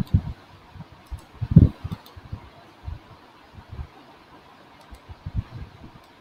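Quiet room noise with a steady faint hiss, irregular soft low thumps, and a few faint clicks from a computer mouse being used to copy and paste.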